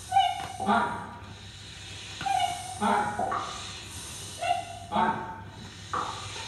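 Choir making wordless vocal sounds: short pitched yelps and syllables that come in clusters every half second to second, without a sung melody or words.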